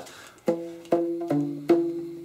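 Rubber bands stretched around a corrugated cardboard box being plucked, with the box acting as the resonator. Four plucked notes at different pitches come about every 0.4 s, starting about half a second in, each ringing briefly and fading.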